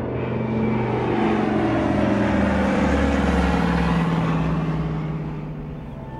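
Cinematic trailer sound design: a loud rushing whoosh with a low rumble and a slowly falling tone, building over the first couple of seconds and fading toward the end.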